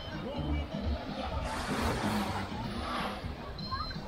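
Beach ambience: low wind rumble on the microphone with distant voices of beachgoers, and a rush of noise from about one and a half to three seconds in.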